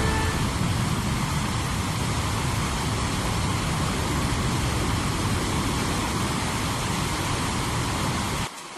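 Waterfall sound effect: a steady rush of falling water.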